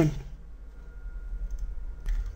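Computer mouse clicking faintly a couple of times about one and a half seconds in, over a steady low electrical hum.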